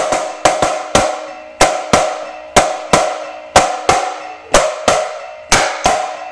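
Marching snare drum played with sticks: sharp strokes in a steady pattern, a loud accented stroke about once a second, each followed by a softer one, every stroke ringing out with a clear drum tone.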